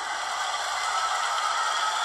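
A steady, even rushing noise with no pitch and no rhythm, after the singing has stopped.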